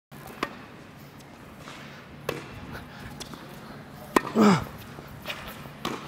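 Tennis rally on an indoor court: four sharp racquet-on-ball hits, roughly two seconds apart, ringing in a large hall. A short vocal exclamation follows the third hit.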